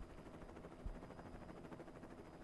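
Very quiet microphone room tone: a faint steady hiss with a soft low thump about a second in.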